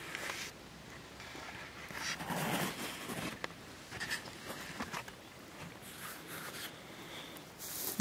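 Irregular rustling and scuffing of clothing and a handheld camera being moved around, with a few small clicks, loudest a couple of seconds in.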